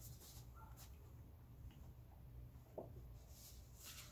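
Near silence, with a few faint, brief rustles of paper as journal pages are opened and leafed through.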